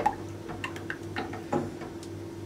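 A spatula stirring chocolate cream in a stainless steel saucepan, knocking against the pan in a few short, sharp clicks, over a steady low hum.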